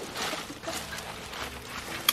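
Dry fallen leaves rustling and crunching as a heifer walks through them: a soft, irregular crackle.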